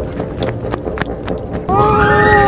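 Running footsteps thudding on beach sand, about three a second, with the handheld microphone jostled. Near the end a loud held tone with several pitches comes in.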